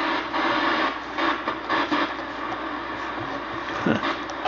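Static hiss from a 1969 Admiral solid-state console TV's speaker, tuned to no station, surging and fading as the tuning dial is turned, with a faint steady hum underneath.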